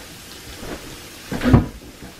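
Quiet handling, then one dull thump about one and a half seconds in as cream cheese is scraped with a spatula from a bowl into a stainless steel saucepan.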